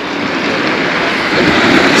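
Steady wash and hiss of calm sea water close to the microphone, with small waves running onto a pebble shore.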